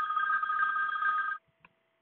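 A telephone ringing: one ring made of two steady high tones held together, cutting off about one and a half seconds in.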